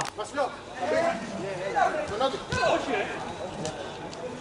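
Voices of several players calling out across the pitch, with a single sharp knock about two and a half seconds in.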